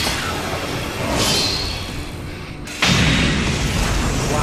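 Anime fight-scene sound effects: a rushing whoosh about a second in, then a sudden loud boom near three seconds in that rumbles on.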